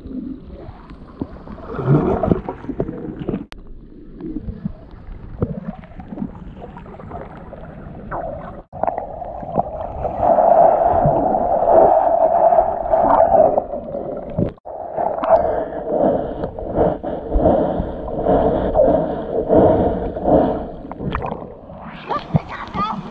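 Muffled underwater sound from a submerged camera in a river: gurgling water and bubbles against the housing, growing louder and denser about halfway through, with a few brief dropouts.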